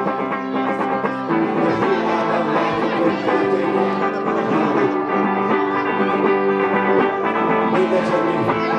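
Indie rock band playing live: an instrumental passage without singing, with sustained held notes filling the sound.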